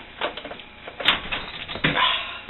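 Several short sharp clicks and knocks, with a strong one about a second in and a heavier knock near the end.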